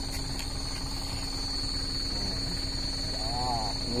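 Stopped truck's engine idling as a steady low rumble, with a steady high-pitched tone above it.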